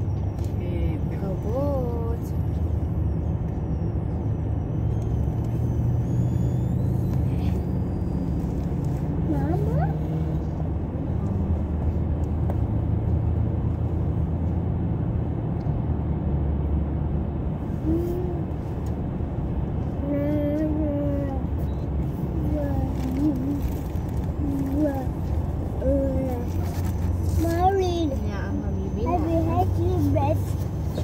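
Steady low rumble of a car driving, heard from inside the cabin, with voices talking over it about two seconds in and again through the second half.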